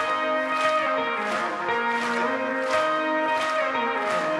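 Live band music: a clean electric guitar picks a repeating riff of high, ringing notes over a steady beat that lands about every two-thirds of a second.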